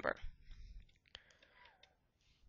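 A few faint, scattered clicks and taps of a stylus pen on a writing tablet during handwriting.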